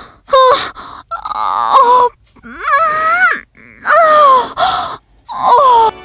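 A man's loud, exaggerated high-pitched moans, about six separate cries, each sliding up and down in pitch with short breaks between them: a comic imitation of sexual moaning.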